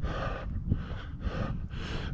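A runner's hard breathing close to the microphone, quick breaths in and out about two a second, still winded after fast interval reps.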